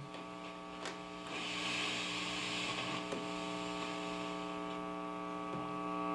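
Tube guitar amplifier idling with its volumes up and nothing playing: a steady mains hum with a stack of overtones, plus hiss that comes up about a second in. The hum grows a little louder near the end as the hum balance pot is turned away from its sweet spot.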